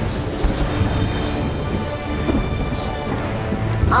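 Thunderstorm sound effect: steady rain with thunder rumbling low underneath.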